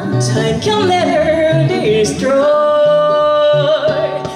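A woman sings a melody live into a microphone, accompanied by an electric guitar. After a few shorter notes she holds one long note through the second half, with a slight waver near its end.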